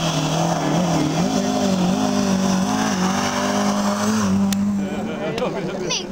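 Rally car engine running hard as the car goes past on the stage, its revs rising and falling with gear changes, then dropping away about four seconds in. A few sharp clicks follow near the end.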